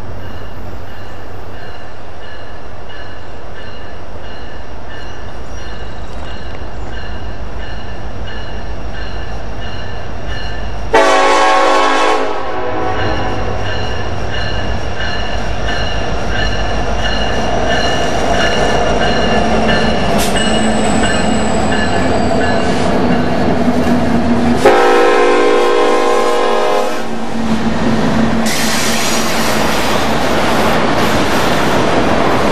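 Diesel freight locomotive's air horn sounding two blasts, a short one about 11 seconds in and a longer one about 25 seconds in, over the steady rumble of the approaching freight train and a thin, high wheel squeal. Near the end the train passes close by with loud wheel noise.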